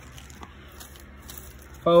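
A pause in a man's speech filled with faint handling noise: low background with a light click about half a second in and a few soft ticks, then his voice returns near the end.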